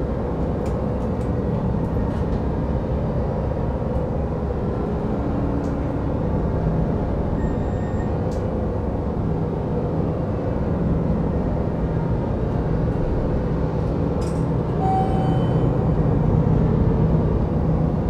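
A steady low rumble, growing a little louder near the end, with a few faint clicks over it.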